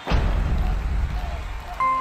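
Sound effects on an animated logo: a sharp hit at the start, then a noisy swell with a low rumble that eases off. Bright chime notes of a jingle come in near the end.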